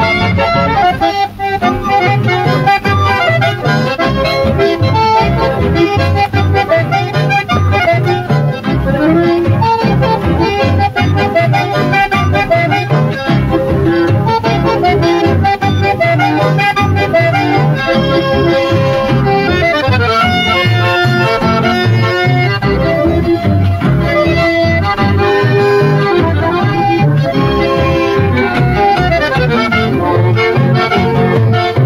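Accordion-led chamamé music playing at full level over a steady beat.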